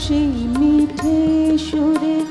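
A woman singing a Bengali song, holding a long, slightly wavering note with small ornaments, to her own harmonium accompaniment. Short percussive strokes sound at intervals beneath the voice.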